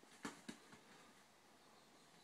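Near silence broken by two soft thumps close together near the start: a kitten pouncing on and wrestling a plush toy on a bed.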